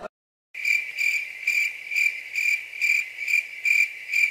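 Cricket chirping, used as a sound effect: a steady high chirp repeating evenly about two to three times a second, starting about half a second in after a brief silence.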